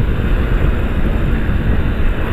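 Heavy wind rush on the camera microphone from a motorcycle riding at speed, with the rider's Yamaha Fazer 250 single-cylinder engine running steadily underneath.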